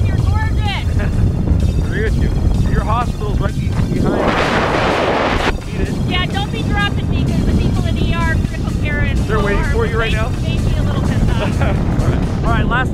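Wind buffeting the camera microphone during a tandem descent under an open parachute canopy: a steady low rumble, with a louder rush of air about four seconds in that lasts over a second.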